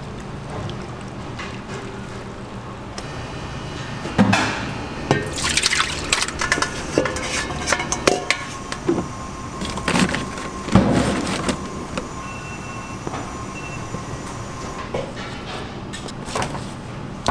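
Milk and other liquid poured into a stainless steel mixing bowl over dough and eggs, splashing, with irregular knocks and clinks against the bowl between about four and twelve seconds in, over a steady kitchen hum.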